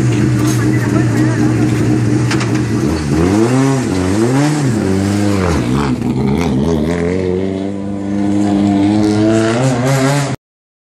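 Rally car engine idling steadily, then revved in several quick blips, its pitch rising and falling, from about three seconds in. Over the last few seconds the revs climb steadily.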